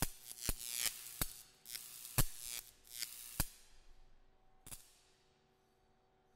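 Logo sting sound design: a string of sharp percussive hits and swooshes over a faint held tone, thinning out and fading to near silence about five seconds in.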